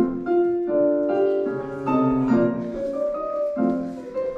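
Piano music: a slow melody of single notes and chords, each struck and left to ring into the next.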